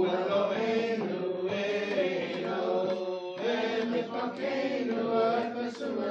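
Congregation chanting a Hebrew prayer together in long sung phrases, broken by short pauses about a second and a half and about three seconds in.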